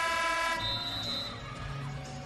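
Basketball arena horn sounding one steady note that fades out within about the first second and a half, with the hall's reverberation trailing off.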